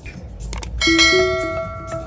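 A short click, then a bright bell chime that rings out and fades: the stock sound effect of an animated subscribe button being clicked and its notification bell ringing.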